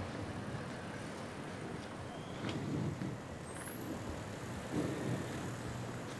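City street noise with road traffic running by, steady with a few soft swells, and a brief click about two and a half seconds in.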